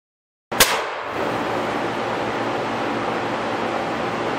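Two sharp shotgun reports about four seconds apart, over a steady rushing noise that starts and cuts off abruptly.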